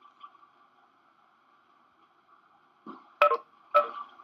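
Stray sound over a video-call line from a participant's unmuted microphone: a faint steady hum, then three short loud sounds in the last second or so.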